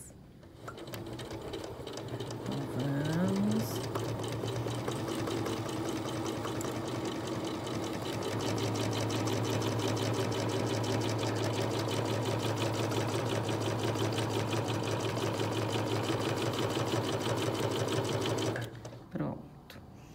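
Domestic electric sewing machine stitching through quilt layers with a rapid, even needle rhythm. It picks up speed in the first few seconds, runs steadily fast through the middle, and stops about a second and a half before the end.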